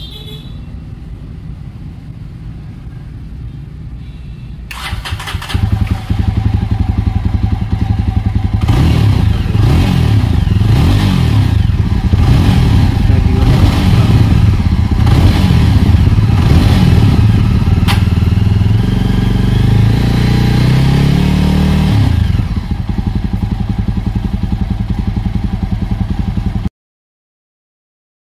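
Jawa 42 Bobber's single-cylinder engine heard close to the exhaust: idling, then revved in repeated short blips, then held at higher revs that climb in steps before dropping back to idle near the end.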